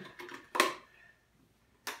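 Plastic screw cap of a large distilled-water jug being twisted off, giving a few sharp plastic clicks: the loudest about half a second in, another near the end.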